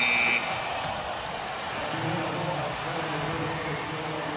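An arena horn ending the quarter, a held tone with several pitches that cuts off abruptly just after the start. Then quieter basketball-court background noise with a faint low drone.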